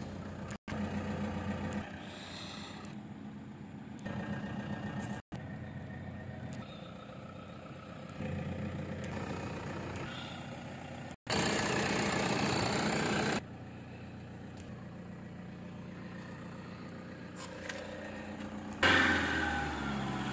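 A vehicle engine idling steadily with a low hum. About halfway through, a loud rush of noise lasts roughly two seconds, and a louder sound comes near the end.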